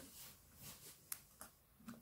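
A couple of faint, sharp snips of small scissors cutting clear plastic packaging, a little after a second in; otherwise near silence.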